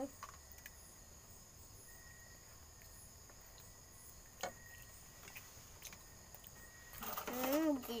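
Crickets making a steady high-pitched drone through a quiet stretch, with one sharp click about halfway through. A child's voice starts near the end.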